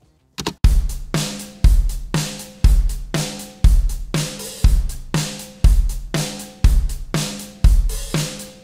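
Recorded drum kit playing back, with the kick drum landing about once a second and snare, hi-hat and cymbals between, starting about half a second in. It runs through an SSL stereo bus compressor whose side-chain high-pass filter is set to about 185 Hz, so the compressor ignores the kick's low end when deciding how much to compress.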